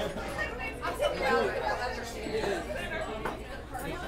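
Several people talking over one another at a shared table: indistinct restaurant chatter.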